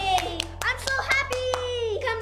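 Children clapping their hands in a quick, uneven run of claps, with a child's excited voice over them.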